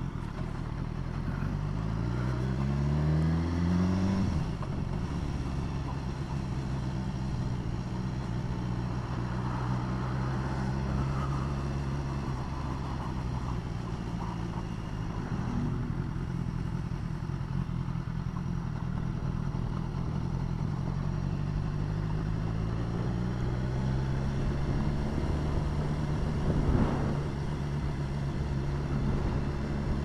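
Motorcycle engine heard from the rider's seat, pulling away after a turn: its pitch rises for about two seconds, drops sharply at a gear change about four seconds in, then it runs steadily at low road speed and rises again near the end, over steady road and wind noise.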